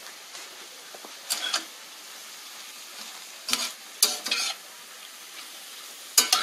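Shrimp sizzling in a cast iron skillet, with a utensil stirring and scraping them in short strokes about a second in and again around three and a half to four and a half seconds in.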